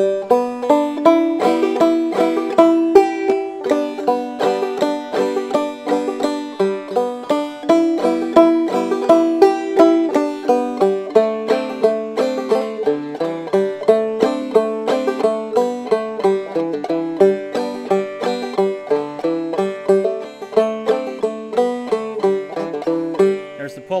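A lone open-back banjo in open G tuning playing an old-time fiddle tune at a moderate, steady pace, with pull-offs worked into the melody.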